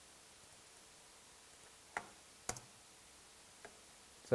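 Quiet room hiss broken by two short, sharp clicks about two seconds and two and a half seconds in, then a much fainter click near the end.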